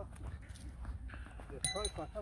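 A short, high-pitched voice near the end, over a low background rumble with faint ticks.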